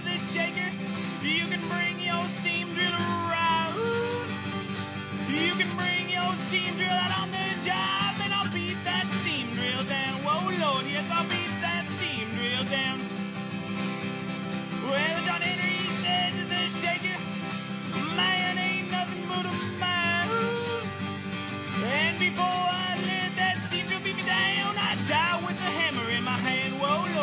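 Solo acoustic guitar playing an instrumental break in an old-time folk song, steady and continuous, with notes sliding up and down.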